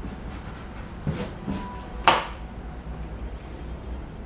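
A single sharp click about two seconds in, from handling the drawing tools as a red marker is set aside and a mechanical pencil taken up, over a faint steady room hum.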